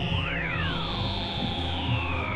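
Experimental electronic music: two high synthesizer tones glide slowly in opposite directions and cross, one falling and one rising, over a steady low drone.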